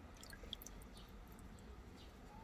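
Faint water sounds, with a few small drips and splashes in the first second, as the soil-covered root ball of a rooted maple cutting is swished in a container of water.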